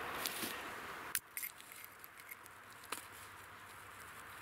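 Rustling of dry grass and forest litter, with a few sharp clicks and snaps. A steady hiss for about the first second cuts off abruptly.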